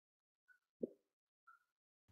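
Near silence broken by a single short low pop a little under a second in, with two faint brief high blips around it.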